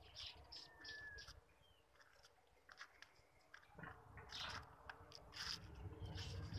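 A pig eating: faint, irregular chewing clicks that grow louder in the second half, with a brief thin bird whistle about a second in.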